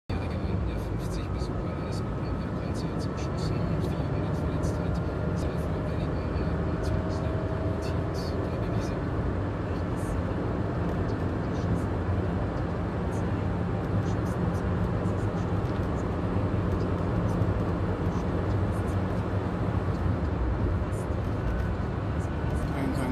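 Road and engine noise inside a moving car: a steady low rumble of tyres and engine, with scattered faint clicks.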